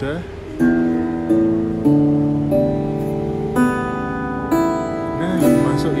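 Open strings of a freshly tuned acoustic guitar plucked one at a time, about six notes each left ringing over the last.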